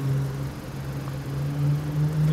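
A car engine idling with a steady, even hum that rises slightly in pitch near the end.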